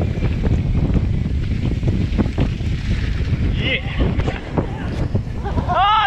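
Wind buffeting the microphone as a mountain bike descends a dirt trail, with tyre rumble and frequent knocks and rattles of the bike over bumps. A voice calls out just before the end.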